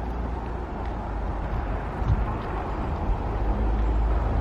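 Wind rumbling on the microphone of a handheld camera outdoors: a steady, unsteady low rumble with a faint hiss above it, and a soft bump about halfway through.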